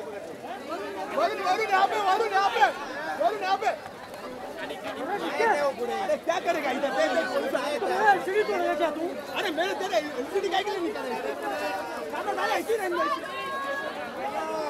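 Crowd chatter: many voices of a packed crowd talking at once, overlapping with no pause.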